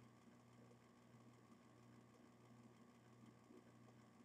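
Near silence: room tone with a faint, steady low hum.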